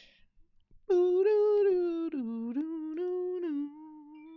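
A woman humming a short wordless tune. It starts about a second in with a few long held notes, steps down in pitch around the middle, then holds a lower note that grows quieter near the end.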